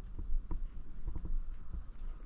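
Insects chirring steadily in a high, continuous band, with scattered low knocks and thumps underneath.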